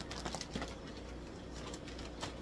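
Light rustles and taps from a water-filled plastic fish bag being handled and set aside in the first half-second, then only a steady low room hum.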